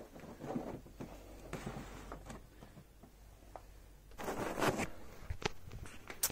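Large cardboard model box being handled and set back on a shop shelf: faint rustling and light knocks, with a louder scraping rustle about four seconds in and a sharp click soon after.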